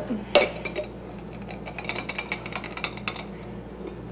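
Soaked water-gel polymer crystals poured from a glass jar into a glass vase: a sharp glass clink about a third of a second in, then a quick run of small clicks and clinks for a couple of seconds as the beads slide in against the glass.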